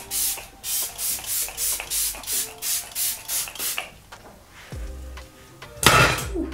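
Quick, even rubbing strokes, about three a second, made as a makeup brush or wand is worked back and forth at the eye; they stop a little before four seconds in. Soft background music plays underneath, and one sharp, loud knock comes near the end.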